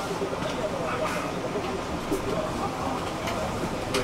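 City bus interior while riding: steady engine and road noise, with faint conversation among passengers underneath.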